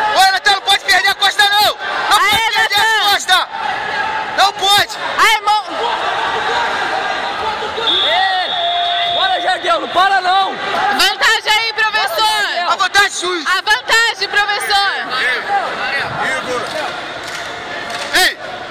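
Shouting voices and crowd chatter echoing in a large hall. A brief steady high tone sounds about eight seconds in.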